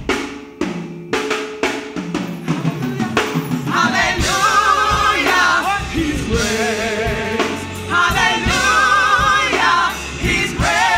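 Live gospel vocal group singing in harmony over a drum kit. Sharp drum strikes stand out in the first few seconds, then the voices come in full with a wavering vibrato, pausing briefly about six seconds in.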